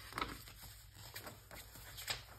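Paper pages of a handmade journal being turned by hand: a faint rustle of a page flipping over about a quarter second in, then soft brushing of paper as the spread is pressed flat.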